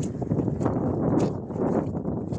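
Wind rumbling on the microphone, with steps squelching in wet mud about twice a second.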